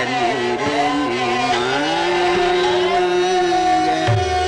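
Male Hindustani classical vocalist singing Raag Yaman (Aiman): ornamented, gliding phrases, then a long steady held note for the second half.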